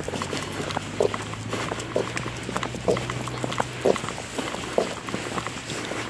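Footsteps walking down a tarmac road, about two steps a second, with a faint low steady hum under the first four seconds.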